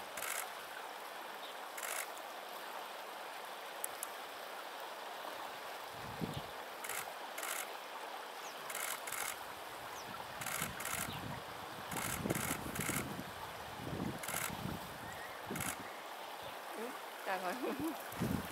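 Steady outdoor hiss with short high ticks every second or two, and faint voices of people talking from about ten seconds in. A brief 'mm' from a voice near the end.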